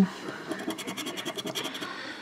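Scraper rubbing the latex coating off a $30 California Millions scratch-off lottery ticket: a quick run of short scratching strokes, about ten a second, uncovering a winning number.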